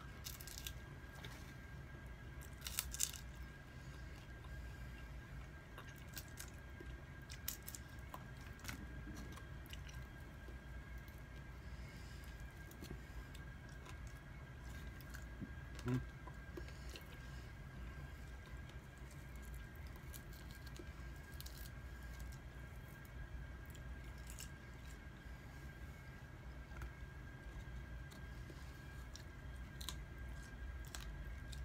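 Faint chewing and biting on a rotisserie chicken wing eaten by hand, with scattered small crunches and clicks, over a faint steady hum.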